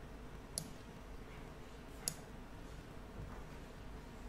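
Two short, sharp computer-mouse clicks, about a second and a half apart, over faint room hum.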